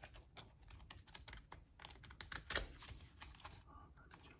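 Card and paper swatches of a sample book being leafed through by hand: a run of faint, quick paper clicks and flaps, the loudest about two and a half seconds in.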